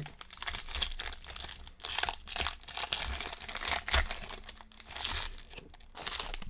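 The foil wrapper of a 2020 Select football card pack crinkling in the hands as it is torn open and the cards are pulled out, a dense run of crackles.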